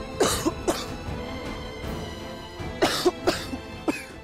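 A man coughing in fits, two coughs near the start and a run of three near the end, over background music with held tones; he is reacting to cake he is allergic to.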